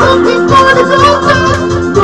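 A man singing karaoke into a handheld microphone over a loud backing track with a steady beat.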